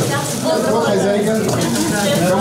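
Several people talking at once in a room, overlapping greetings with some high, sing-song voices.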